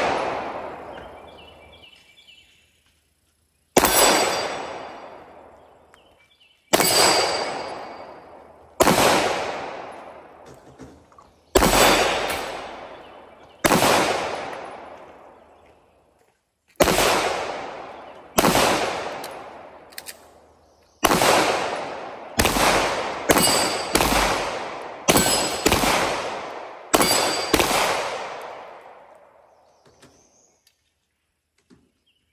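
A Canik 9mm pistol fired about sixteen times. The shots come singly two to three seconds apart at first, then quicker, under a second apart, in the second half. Each shot trails off in a long echo.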